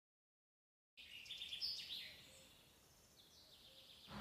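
Birds chirping, starting abruptly about a second in after silence, loudest briefly and then fading to faint.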